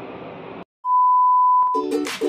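A single steady electronic beep tone lasting about a second, after a brief moment of silence. Background music starts just as it ends.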